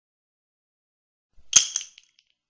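A sheet of sketchbook paper being ripped: one short, sharp tear with two quick peaks, less than half a second long, about a second and a half in.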